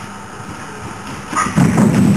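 A horse's hoofbeats on the soft arena surface. The first second and a half is fairly quiet, then a loud run of dull thuds starts as the horse comes close.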